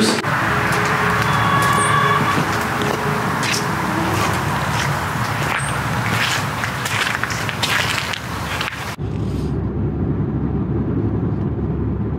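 Rain pattering on a pickup truck's canopy, a dense hiss with many small ticks. About nine seconds in it cuts to the low, steady road rumble of a car driving, heard from inside the cabin.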